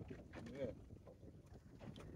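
Quiet outdoor background on the open water: a faint low rumble of wind and sea, with a soft spoken "yeah" about half a second in.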